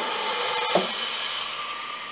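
Morgan G-100T injection molding press hissing steadily as its clamp travels up, with a faint steady tone that stops about three quarters of a second in while the hiss fades away.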